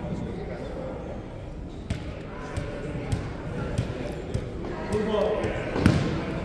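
A basketball being dribbled on a hardwood gym floor: a run of sharp bounces about two-thirds of a second apart starting about two seconds in, the last one near the end the loudest. Chatter of voices echoes in the gym underneath.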